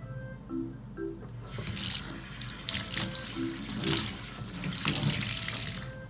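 Water running from a tap into a stainless steel sink. It starts about a second and a half in and stops just before the end.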